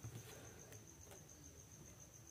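Near silence, with a faint, steady, high-pitched cricket trill and a few faint clicks from wires being handled.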